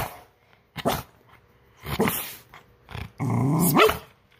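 Shetland sheepdog barking on the "speak" command. Several short barks come about a second apart, then one longer, drawn-out call rising in pitch near the end.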